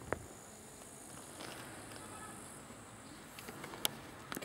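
Faint outdoor quiet with a thin, high insect hiss, broken by light clicks of metal alternator parts being handled on a cloth: one sharp click just after the start, and a few small clicks with another sharp one near the end.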